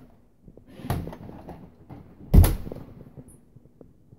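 Two dull thumps about a second and a half apart, the second louder and deeper, followed by a few faint clicks.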